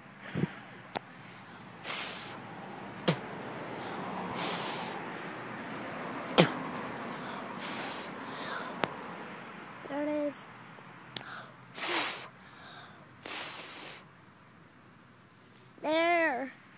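Phone handling noise outdoors: scattered sharp clicks and knocks and several short rubbing or rustling noise bursts as the phone is moved about, over a faint steady background. A brief vocal sound comes about ten seconds in.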